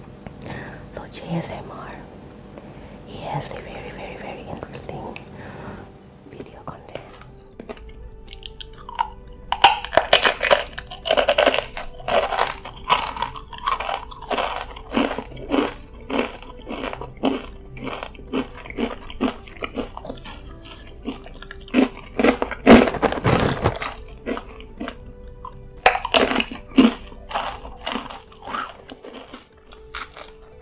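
Close-miked eating: crisp tortilla chips (Doritos) bitten and chewed in a long run of sharp crunches, with soft speech at the start and faint music underneath.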